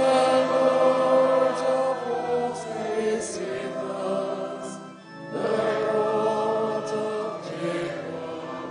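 Church choir singing together in long, held phrases, with a short break about five seconds in before the next phrase.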